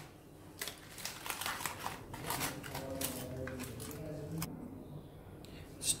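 Aluminium foil being unwrapped by hand, crinkling and crackling irregularly, dying down near the end.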